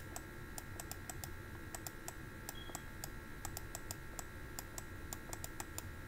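Faint, irregular light clicks or taps, a few each second, over a low steady background hum.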